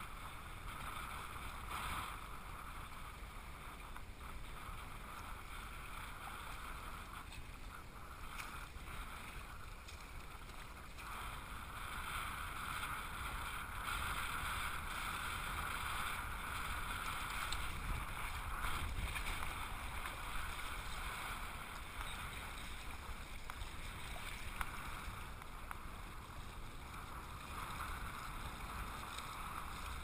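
Shallow seawater sloshing and lapping against a camera held at the water line, a continuous muffled wash with small knocks and splashes, somewhat louder in the middle stretch.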